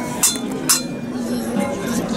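Metal shaker clinking against a stainless steel bowl, twice about half a second apart.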